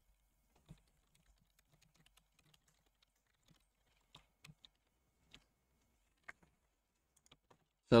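Scattered, faint keystrokes on a computer keyboard as a line of code is typed, a single click at a time with gaps of up to about a second between them.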